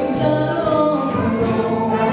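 Female vocalist singing live with a jazz big band accompanying her.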